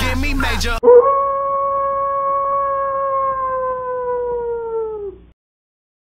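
Hip-hop music with a beat cuts off with a loud hit, then a wolf howl sound effect: one long, steady call that sinks slightly in pitch and fades out about five seconds in.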